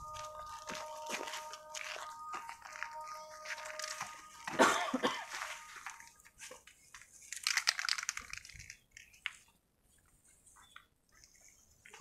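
Crunching and rustling of dry leaves and brush as a measuring wheel is pushed through vegetation, with irregular bursts that are loudest about four and a half seconds in and again near eight seconds, then dying down.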